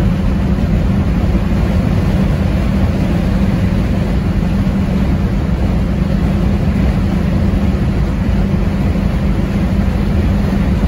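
Steady low rumble of road, tyre and engine noise inside a 1973 Ford Mustang convertible cruising at freeway speed.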